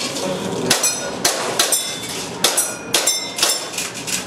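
Airsoft gas pistol firing a quick string of about six shots at steel plates, with BBs striking and setting the plates ringing. The shots start about a second in and come roughly half a second apart.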